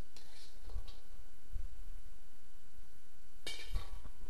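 Faint clinks and scrapes of a metal spatula against a wok and plate as stir-fried rice cakes are served, then a light knock as the plate is set down on the table near the end, over a low steady room hum.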